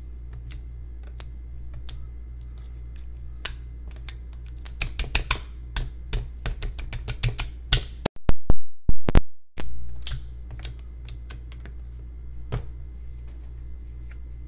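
Fingers poking and patting soft white jiggly slime in a plastic tub, making quick sticky clicks and small pops. The clicks come thick and fast in the middle and thin out later, over a steady low hum.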